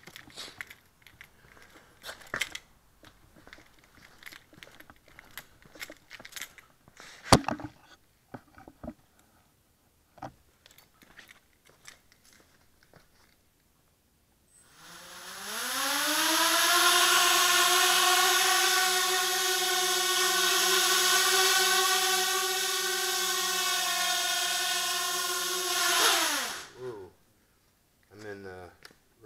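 Small QAV250-clone racing quadcopter's brushless motors spinning up about halfway through, the whine rising in pitch and then holding steady for about ten seconds as it hovers, before cutting off near the end. Before that, only scattered clicks and a knock.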